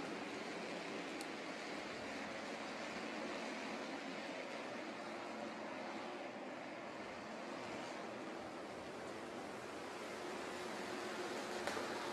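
Steady, faint track ambience of distant Bandolero race cars running laps: an even rushing haze of engine and wind noise with no distinct revs or passes.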